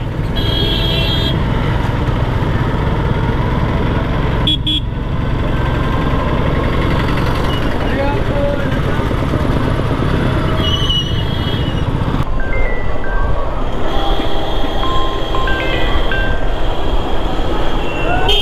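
Motorcycle riding through town traffic: steady engine and wind rumble on the microphone, with short horn toots from traffic heard a few times, near the start, about four seconds in and about eleven seconds in.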